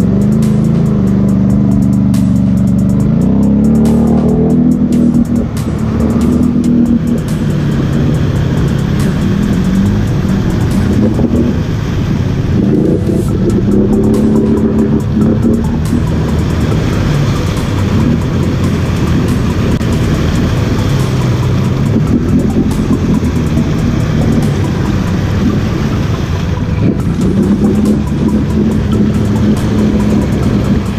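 An ATV engine running and revving up and down as the quad is worked through deep mud. A music track plays over it.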